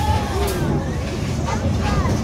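Chip 'N' Dale's Gadget Coaster train rolling along its track, a steady low rumble, with riders' voices over it.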